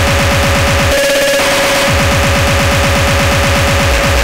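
Speedcore track: very fast distorted kick drums, about ten a second, each a short falling pitch sweep, under a steady high-pitched drone. The kicks drop out briefly about a second in, then resume.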